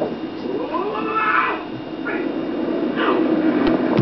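A guinea pig squealing (wheeking): a long rising call about a second in, then shorter falling calls near two and three seconds.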